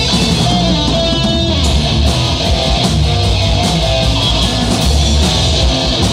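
Live rock band playing an instrumental passage: electric guitar, bass guitar and drum kit. About one and a half seconds in, the sound turns brighter and denser.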